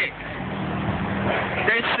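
Motor vehicle engine running with a steady low hum over street noise.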